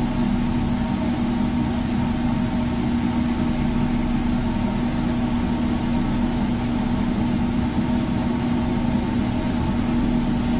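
Steady mechanical hum with one strong low tone and fainter higher tones above it, unchanging throughout.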